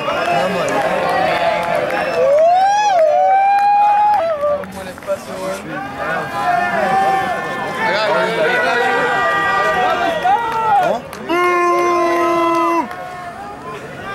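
Men's voices shouting and calling out across a rugby pitch, with several loud drawn-out calls. One call is held steady for over a second about three quarters of the way through.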